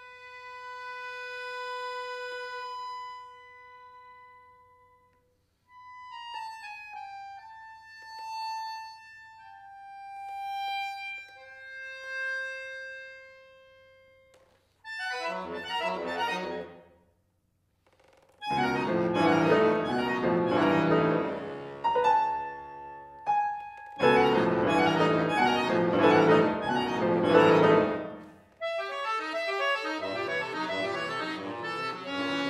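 Bayan (Russian chromatic button accordion) in contemporary concert music. For about the first fourteen seconds it plays soft held single notes, some sliding between pitches, with short pauses. It then breaks into loud, dense chord clusters in rapid repeated pulses, and piano joins near the end.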